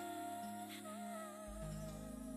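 Soft background music: a slowly wavering melody line held over sustained chords, with a deep bass note coming in about one and a half seconds in.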